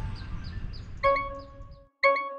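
A small bird chirping over and over, short high falling notes about four a second, over a low outdoor rumble. About a second in, a bell-like chime sound effect rings out and slowly dies away.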